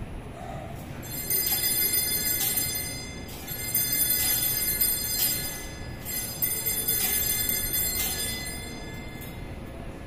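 Altar bells ringing at the elevation of the chalice during the consecration: bright, ringing strokes roughly once a second in three spells, starting about a second in and dying away near the end.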